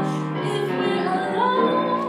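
Female jazz vocalist singing over piano accompaniment, sliding up into a held note about two-thirds of the way through.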